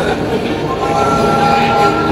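Electronic train-whistle sound effect from the speaker of a Thomas the Tank Engine ride-on kiddie train, a single held tone lasting a little over a second in the second half, over a general din.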